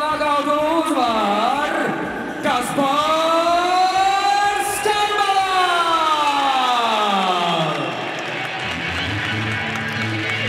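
Ring announcer's voice stretched into one long call that rises and falls over several seconds, over music and crowd cheering: the announcement of the bout's winner.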